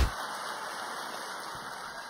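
A steady hiss-like noise that slowly fades away, following a loud swell that peaks just as it begins.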